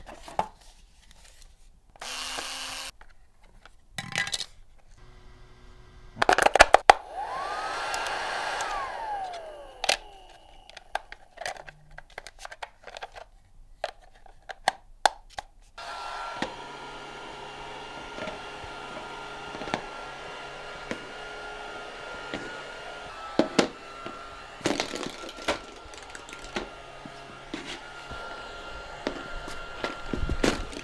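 Knocks and clatter of a toy being handled and unpacked, then, about halfway through, a hover soccer ball's fan motor starts and runs with a steady hum at its normal voltage, with scattered light knocks as the disc slides and bumps.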